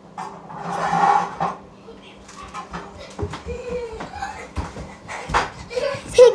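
A child's wordless voice sounds close to the microphone, with a breathy burst about a second in and scattered knocks and bumps.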